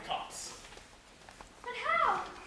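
A performer's voice: a short drawn-out vocal sound near the end that rises and then falls in pitch, like a whine.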